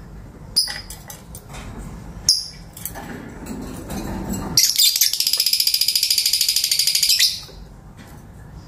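Fischer's lovebird giving two short sharp chirps, then, about halfway through, a loud fast pulsing trill lasting around two and a half seconds.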